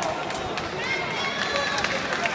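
Ringside crowd voices, several people talking and calling out at once.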